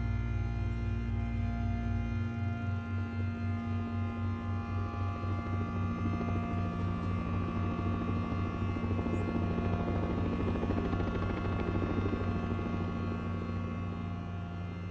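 Drone film score for cello and electronics: many sustained tones layered and held, with a deep bass note that gives way about two seconds in to a low throb pulsing about four times a second.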